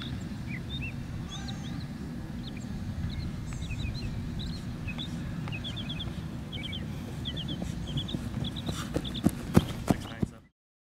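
Outdoor ambience: a steady low rumble with many short, high chirps scattered through it. Several sharp knocks come close together near the end.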